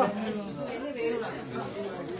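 Chatter of a group of people talking over one another, with one short knock right at the start.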